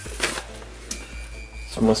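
Paper rustling briefly as a slip is handled, then a quieter stretch with a faint steady high tone.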